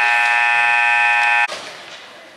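Ice arena scoreboard horn sounding one long, steady blast that cuts off sharply about one and a half seconds in.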